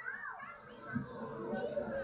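Children playing and chattering, a test sound heard through Sony noise-cancelling headphones in ambient (transparency) mode; the voices grow louder about a second in.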